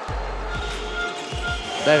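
Basketball arena ambience: crowd noise with music playing over it and a few short high squeaks.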